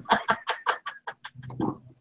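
A woman laughing: a quick run of breathy "ha" pulses, about seven a second, ending in a short voiced laugh.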